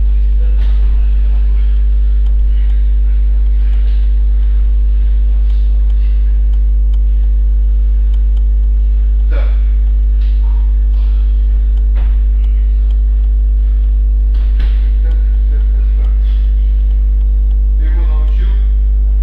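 Loud, steady electrical mains hum with a ladder of evenly spaced higher overtones, unchanging throughout, with a few faint knocks and distant voices beneath it.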